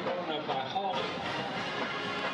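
Music with held, steady notes playing in the background, under faint voices.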